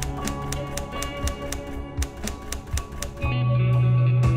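Typewriter key clicks in a quick, even run, about six a second, typing out on-screen title text over sustained instrumental music. The clicks pause around two seconds in, and a louder low held note comes into the music near the end.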